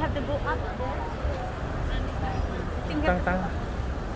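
Busy city street: a steady low rumble of road traffic, with snatches of passers-by's voices over it.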